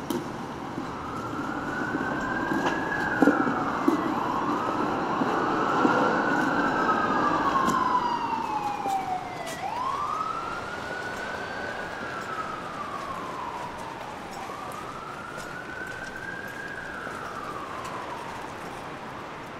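Emergency vehicle siren in a slow wail, its pitch rising and falling about four times, with a second wail overlapping for a few seconds, over steady city street traffic noise.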